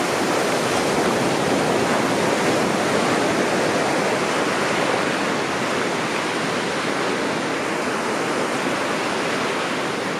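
Surf washing up a sandy beach: a steady hiss of breaking waves and foam, easing slightly toward the end.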